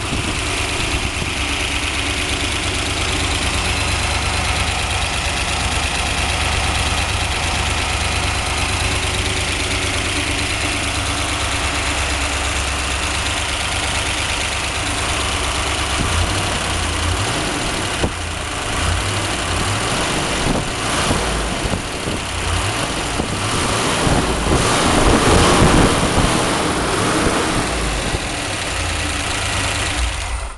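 A 1963 Corvette's 327 small-block V8 runs freshly fired. Its sound turns uneven about halfway through, with a louder stretch a few seconds from the end. The owner thinks the rockers might need to be adjusted.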